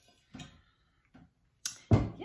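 A few faint handling sounds, then two sharp knocks near the end, the second the loudest, as a Corning Ware Pyroceram roasting pan is set down.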